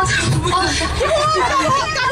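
Speech only: a person talking into a handheld microphone, with other people chattering around.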